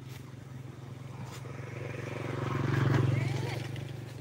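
A motor vehicle's engine passing close by: a steady low drone that grows louder to a peak about three seconds in and then starts to fade.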